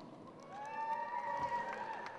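A faint, distant held cheer from the audience, one long call starting about half a second in, with light clicking footsteps.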